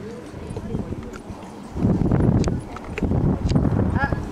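Hoofbeats of a horse trotting on a soft sand arena surface, heard as dull, muffled thuds that grow louder about two seconds in.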